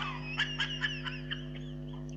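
A young man's high-pitched snickering laughter in a quick run of short squeaky bursts, about five a second, dying away just over halfway through.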